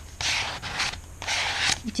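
A plastic credit card scraping across paper as it spreads acrylic paint, in three short strokes.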